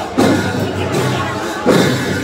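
Ghatu dance music with a drum struck slowly, a loud hit about every second and a half: one just after the start and one near the end.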